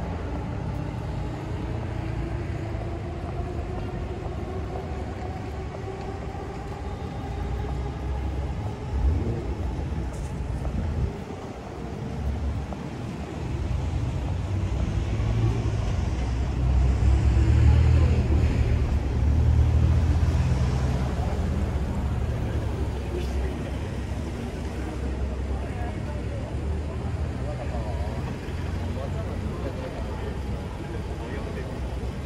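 Busy city street traffic: car engines and tyres running past, with one engine slowly rising in pitch over the first several seconds and a louder low rumble of a vehicle passing close around the middle. Voices of passers-by are mixed in.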